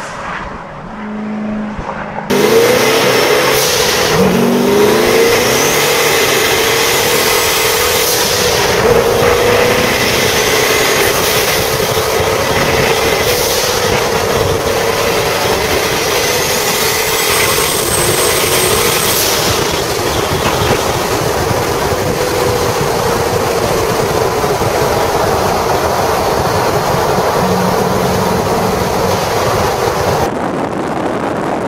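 Twin-turbo 572 cubic inch big-block V8 of a 1969 Camaro. For the first two seconds it approaches, quieter. Then the sound jumps to a loud, steady drone heard from on board while cruising, its pitch rising a few seconds in, with a faint high whine rising and falling now and then.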